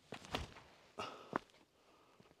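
Footsteps on a dirt path: a disc golfer's quick run-up and plant as he throws a disc, about four short scuffs and thuds within the first second and a half.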